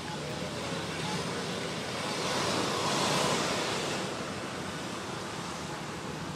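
Road traffic noise, swelling as a vehicle passes about two to four seconds in, then fading back to a steady hum.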